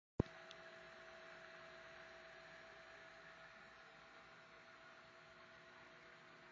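Faint steady hum with hiss, opening with a single sharp click.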